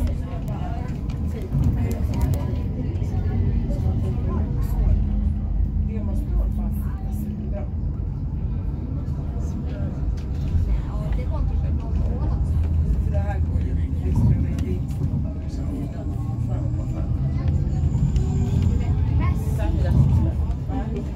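Tram running through the city, heard from inside the passenger car: a steady low rumble throughout, with voices talking in the background.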